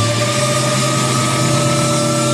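Rock band holding a sustained chord, a low bass note under steady higher tones, the highest drifting slightly up in pitch, with no drums.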